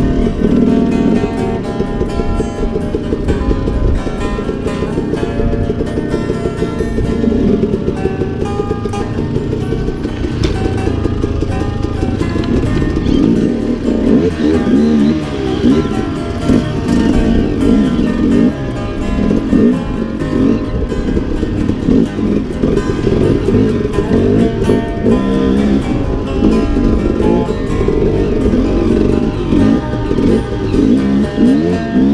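Background music with guitar, over a KTM 300 two-stroke dirt bike engine revving up and down as it rides the trail.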